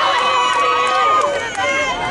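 A group of teenage girls cheering and shouting together, with several long high-pitched cries overlapping.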